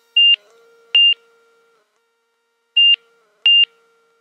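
Light-aircraft stall warning beeping through the headset intercom during the landing flare: four short, high-pitched beeps spaced unevenly over about three and a half seconds, with almost nothing heard between them.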